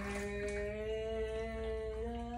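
A woman's voice holding one long hummed or sung note, rising slightly in pitch.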